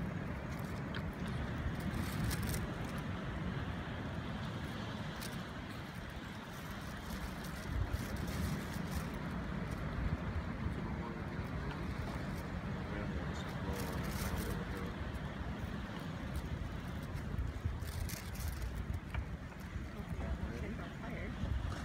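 Steady low rumble of wind and ocean surf, with a few faint clicks scattered through it.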